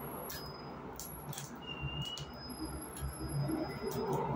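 Foil lid being peeled off a plastic sour cream tub, with a few small crinkles and clicks.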